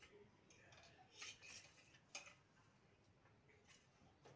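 Faint light clicks and rustles from a wooden hand loom weaving silk, as the weaver works the treadles and shuttle between beats of the reed.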